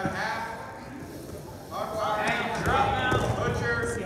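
Indistinct raised voices shouting in a gym, growing louder about two seconds in, with a few faint knocks.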